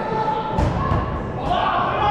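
Dodgeballs thudding on impact twice, about a second apart, echoing in a large indoor sports hall, with players shouting.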